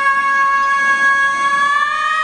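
A female pop singer belting one long sustained high note, held at a steady pitch and rising slightly near the end.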